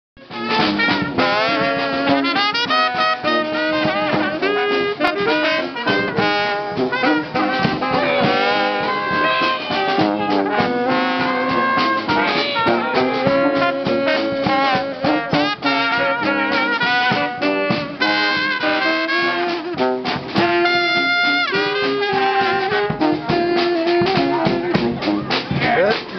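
New Orleans brass band playing a lively jazz number: saxophone, trumpet, trombone and sousaphone over a snare drum and bass drum keeping a steady beat.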